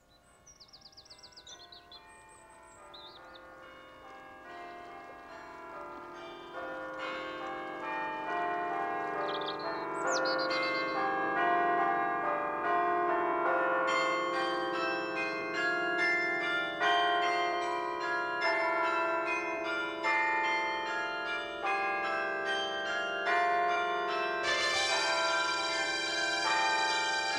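Church bells pealing: many overlapping strokes ringing on, starting faint and growing louder through the first half into a dense, continuous peal.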